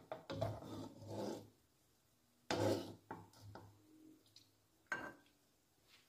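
Metal slotted spatula scraping across the bottom of a non-stick pan as soft dumplings are scooped out of water. Two scrapes about a second apart, then a short sharp knock a little before the end.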